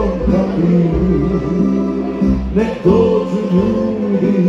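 Live tamburica music: a Croatian tambura ensemble strumming and plucking over a steady bass, with male voices singing.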